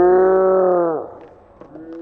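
A man's long held shout on one steady pitch, breaking off about a second in. Shorter shouts follow near the end, the sort of hollering that greets a landed trick.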